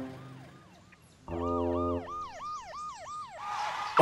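Cartoon police car siren: a fast up-and-down wail, about three cycles a second, that fades in and grows louder. A low steady hum sounds under it briefly.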